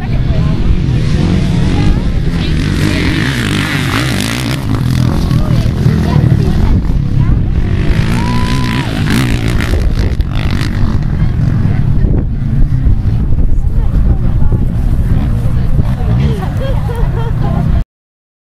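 Heavy wind buffeting the microphone, with dirt bike engines as riders pull away across open ground and people's voices mixed in. The sound cuts off abruptly just before the end.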